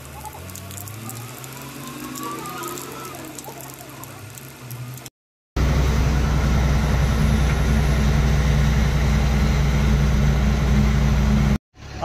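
Heavy truck's diesel engine, its pitch rising as it pulls away, over a hiss of rain. After a cut about five seconds in, a loud, steady engine drone is heard from inside the truck's cab while it drives.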